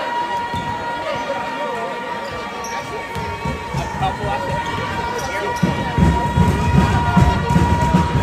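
Basketball bouncing on a hardwood gym floor over crowd chatter, with a steady high tone throughout. From about six seconds in, dense thuds of feet and ball on the court as players go after the free-throw rebound.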